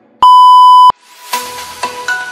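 A single loud electronic beep, one steady high tone lasting under a second, the interval-timer signal that ends a 30-second exercise set and starts the break. About a second and a half in, music with short, separately struck notes begins.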